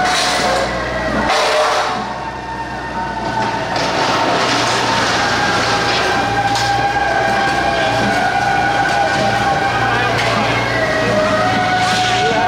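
Temple procession music with long held, slightly wavering notes, heard over street noise and voices.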